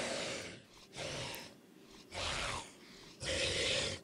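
Zombie sound effect from an augmented-reality wine-label animation: four short, raspy breaths about a second apart.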